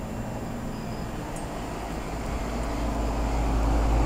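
2005 Goodman heat pump's outdoor unit running in cooling mode: a steady hum of the compressor and condenser fan, growing louder over the last two seconds.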